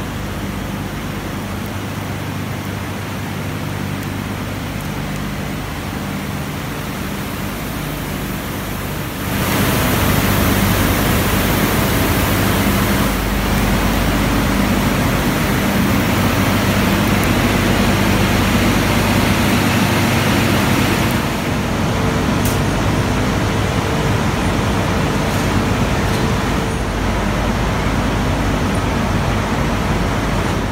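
Steady rushing noise of industrial plant machinery with a low, even hum underneath, stepping up louder about nine seconds in.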